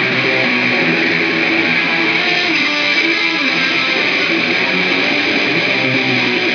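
A lone electric guitar strummed steadily as a song, with no drums or bass behind it.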